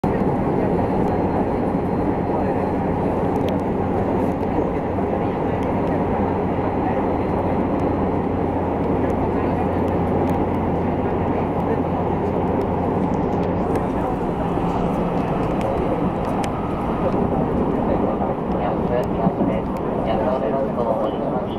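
Running noise heard inside a JR West 223 series 2000 electric train at speed: a steady rumble of wheels on rail, with a low hum that fades out about three-quarters of the way through.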